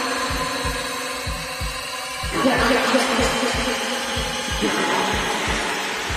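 Techno DJ mix: a steady, evenly spaced kick drum under a looping, gritty synth pattern. The upper layers change about two seconds in and again near the end.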